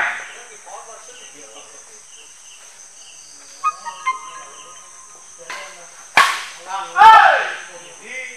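Badminton doubles rally: a few sharp racket-on-shuttlecock hits, some about four seconds in and louder ones around five and a half and six seconds, then a loud shout from a player. A steady high-pitched drone runs underneath.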